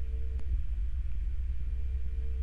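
A steady low rumble with a faint hum above it and a single soft click about half a second in.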